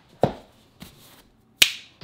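Three separate sharp clicks or knocks: a loud one about a quarter second in, a faint one near the middle and another loud one near the end, with quiet between them.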